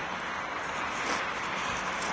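A dog gnawing and scraping with its teeth at the packed-snow head of a snowman: a steady crunching scrape of snow.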